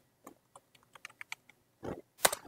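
Computer keyboard typing: a quick run of separate key clicks, with one heavier key press near the end.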